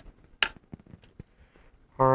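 Small handling clicks at a fly-tying vise: one sharp click about half a second in, then a few faint ticks.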